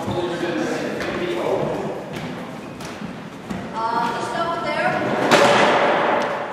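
Thuds of a gaelic football being passed and caught on a wooden sports-hall floor, echoing in the large hall, with players' voices calling out between them.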